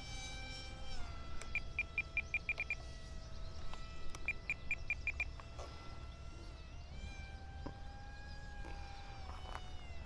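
Faint, steady whine of the E-flite Aeroscout's electric motor and three-blade propeller in flight, dropping in pitch about a second in and shifting again near the end. Two quick runs of short high beeps, a few seconds apart, from the radio transmitter as the trim is adjusted.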